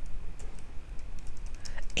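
Typing on a computer keyboard: a run of faint, irregular key clicks as a word is typed.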